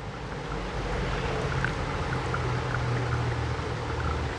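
A gooseneck kettle pours a thin stream of hot water onto coffee grounds in a paper-lined pour-over dripper. This is the final 50 cc pour of the brew, a steady trickle that gets slowly a little louder.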